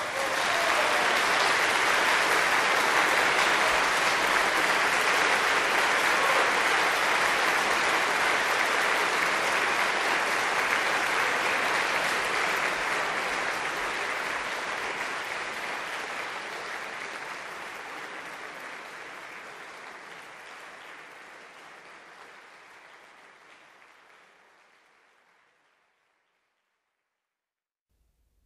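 Concert audience applauding a solo piano performance, starting right as the piano stops. Steady for about twelve seconds, then gradually dying away to silence.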